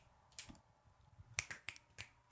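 Fingers snapping: four or five sharp snaps at uneven intervals, some in quick pairs, from attempts at a double snap.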